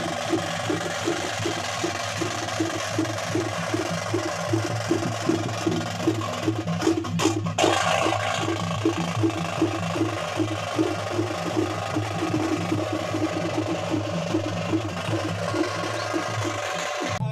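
Drums beating a fast, steady rhythm of about three beats a second over continuous background noise.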